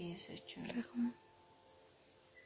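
A woman speaking quietly for about the first second, then quiet room tone.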